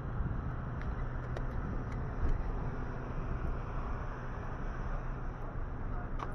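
Outdoor street ambience: a steady low rumble of car traffic, with a few light clicks about a second or two in.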